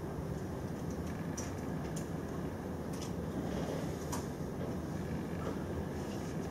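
Steady low room hum with a few sparse, sharp clicks of keyboard keys as a short word and an editor command are typed.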